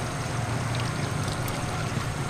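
Diesel-electric locomotive running at a distance as it approaches: a steady low engine rumble under a constant hiss of open-air noise. A faint steady tone fades out about half a second in.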